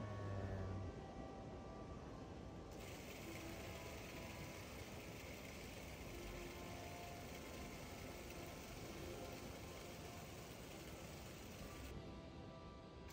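Steady, faint mechanical whir with a hiss, starting abruptly about three seconds in: the running sound of a 16mm film mechanism.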